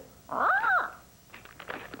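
Blue-and-gold macaw giving one short, raspy squawk that rises and falls in pitch, followed by a few faint clicks.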